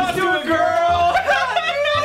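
Men's voices singing a comic, wordless tune whose pitch slides up and down in held notes.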